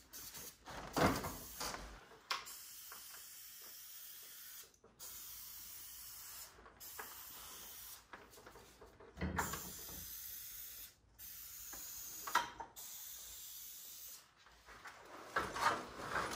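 Aerosol can of heavy-duty garage door lubricant sprayed onto the door's hinges in about six bursts of a second or two each, with short breaks between. A few knocks of handling come in among them, the loudest near the start.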